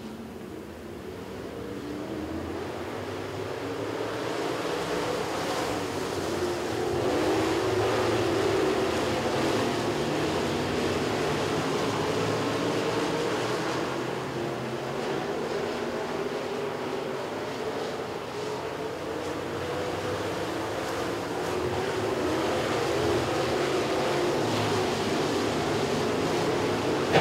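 A field of dirt-track modified street stock cars racing around the oval, several engines running hard together with their pitch wavering up and down as the cars pass. It grows louder over the first several seconds, then holds fairly steady.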